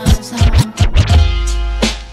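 DJ scratching a vinyl record on a turntable over a hip-hop mix: quick back-and-forth scratches in the first second, then a held bass note and steady chords carry the music.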